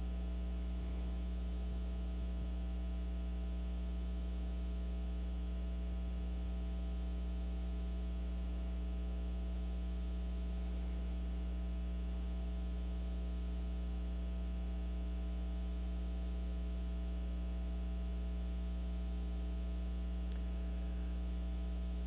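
Steady electrical mains hum: a low, unbroken buzz with a stack of overtones, holding the same level throughout.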